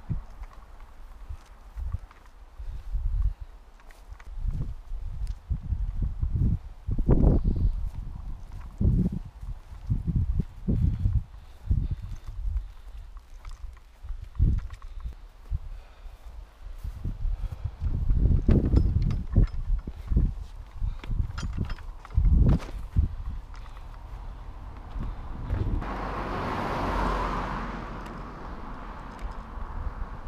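A hiker's footsteps and walking-pole strikes on rough ground: irregular heavy thuds jolting the pole-held camera. Near the end a broad rush of noise swells and fades over about two seconds.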